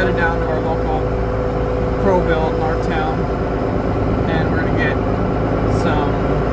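Steady road and engine rumble inside a moving pickup truck's cab, with brief indistinct voices.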